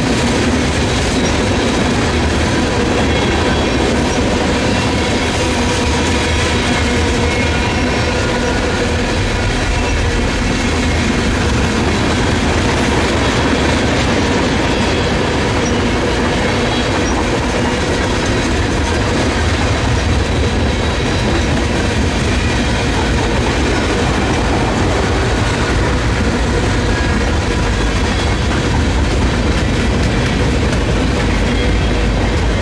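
Loaded freight tank cars rolling past close by: a loud, steady rumble and rattle of steel wheels on rail, with thin steady high tones ringing above it.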